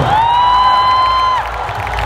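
Crowd cheering at a cast announcement, led by one high voice holding a single long cheer that rises at the start, holds for about a second and a half, then stops.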